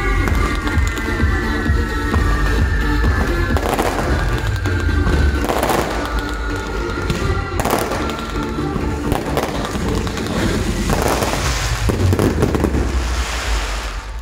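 Maltese ground fireworks (nar tal-art), with spark fountains hissing and crackling and a few sharp bangs. Loud music with a heavy bass plays along. The display dies away at the very end.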